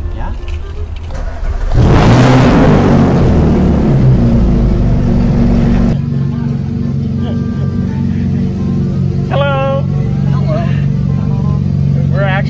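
Ferrari 458's V8 engine starting about two seconds in with a loud flare of revs, then settling to a steady idle.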